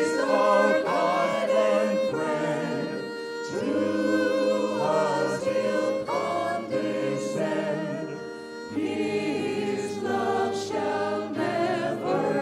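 A small mixed vocal ensemble singing a hymn in harmony with violin accompaniment, in long held phrases broken by two short breaths, about three and a half and eight and a half seconds in.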